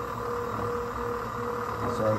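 NEMA 23 stepper motor turning the conveyor's ball screws during its width-measuring run, a steady whine at a constant pitch.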